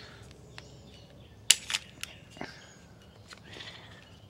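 A few sharp clicks from a Ruger 9E's spare pistol magazine being handled and pressed. The loudest comes about one and a half seconds in, with two lighter ones soon after.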